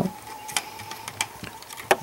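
A few light, sharp clicks of a model railroad car's truck and wheelsets being handled, the loudest just before the end, over a faint steady high tone.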